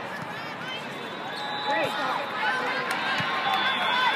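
Indoor volleyball rally in a large, echoing hall: many voices calling and chattering, sneakers squeaking on the hardwood court, and two sharp ball contacts a little under two and about three seconds in.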